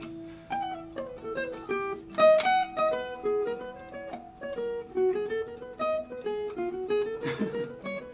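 Enya Nova Go carbon fiber acoustic guitar being fingerpicked: a melody of single notes, several a second, each ringing clearly, that steps down and then climbs back up.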